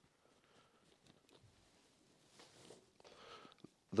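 Faint rustling and handling noises from someone moving about with handheld equipment in a quiet room, with a short sharp click just before the end.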